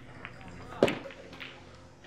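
A pool cue shot on the called eight ball: one sharp click a little under a second in, with a few fainter ticks around it.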